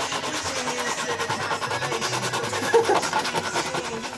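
Sandpaper rubbed rapidly back and forth over a cured resin patch on a surfboard, an even scratchy rhythm of several strokes a second, with a brief louder sound about three seconds in.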